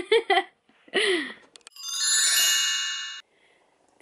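A bright chime sound effect, many high ringing tones sounding together for about a second and a half and stopping abruptly, coming just after a woman's short laugh. It marks the cut from one scene to the next.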